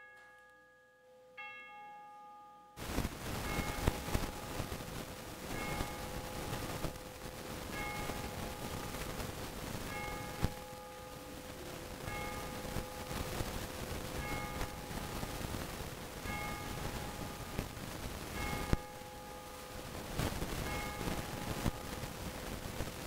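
Church bell tolling about once a second, each stroke ringing with a steady hum under it. Two softer strikes come first, then a steady hiss cuts in about three seconds in and the tolling runs on over it.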